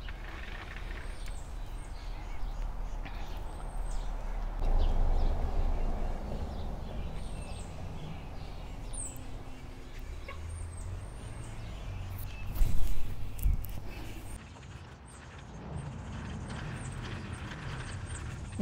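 Outdoor backyard ambience: faint high bird chirps over a low rumble, with a brief louder bump about thirteen seconds in.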